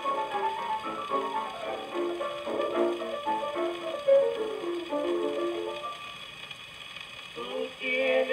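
Old gramophone record of a tango by a vocal trio, played acoustically on a Victor Victrola: an instrumental introduction with a stepping melody, then wavering voices coming in near the end.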